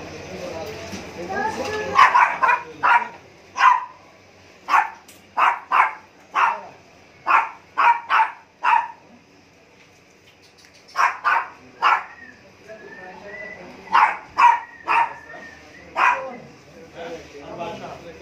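Small dogs barking in short, sharp yaps, in clusters of several barks with pauses of a second or two between them.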